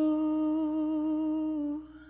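A singer's voice holding one long, steady note with a slight vibrato, which fades out near the end.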